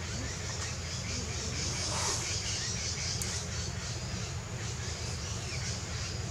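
Steady outdoor background noise: a constant low rumble under an even high hiss, with a brief swell about two seconds in and a few faint ticks.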